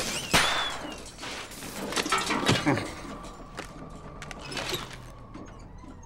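Film crash sound effects: a loud impact about a third of a second in, followed by scattered knocks and clatters of wreckage settling.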